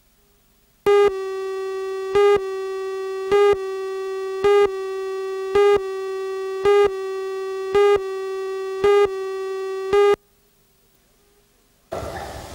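Videotape countdown leader tone: a steady buzzy electronic tone comes in about a second in, with a louder pip roughly once a second, nine in all, and cuts off about two seconds before the end.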